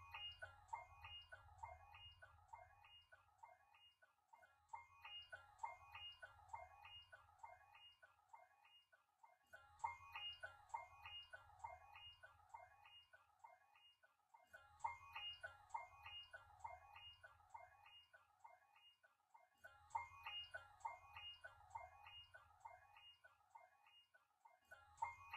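Very faint ticking with short falling chirps and a low hum under it, the same pattern repeating about every five seconds like a loop.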